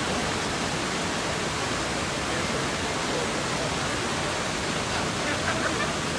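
Steady rushing hiss of fountain water splashing into a reflecting pool, with faint voices toward the end.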